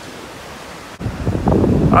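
Ocean surf and wind noise on the microphone, a steady hiss. About a second in it jumps louder, with a low wind rumble.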